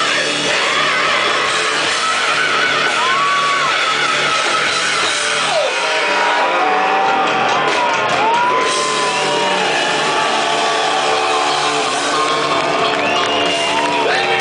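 A heavy metal band playing live and loud, electric guitars and a shouted, high lead vocal over the full band, with several long held notes that bend in pitch.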